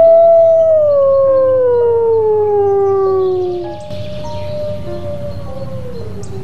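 Wolf howling: one long howl that swoops up and then slides slowly down in pitch over about four seconds, followed by a quieter second howl that holds its pitch and drops away near the end.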